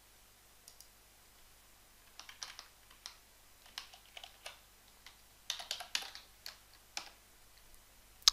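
Faint keystrokes on a computer keyboard: a few scattered taps and short quick runs of them, with pauses in between, while a word in a line of code is retyped.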